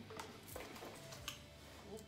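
A handheld water spray bottle: a few faint, sharp trigger clicks spaced about half a second to a second apart, over low room tone.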